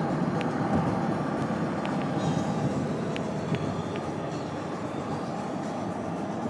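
Steady road and engine noise of a moving car, heard from inside the cabin, with a few faint clicks.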